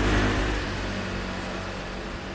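A car passing on the street, its engine and tyre noise loudest at first and fading away.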